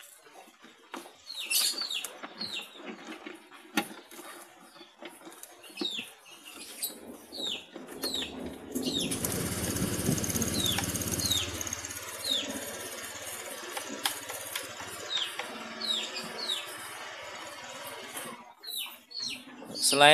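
Small birds chirping repeatedly in short, high, falling calls. A louder steady rushing sound with a low rumble comes in from about nine to twelve seconds.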